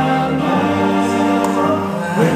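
Choir of stage singers singing long held chords, the harmony shifting about half a second in.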